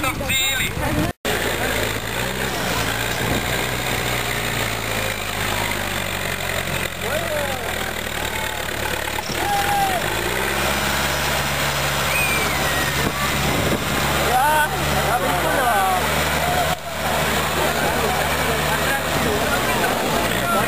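Engine of a small homemade trial tractor running under load as it crawls through deep mud, its note shifting to a new pitch about halfway through. Crowd voices in the background.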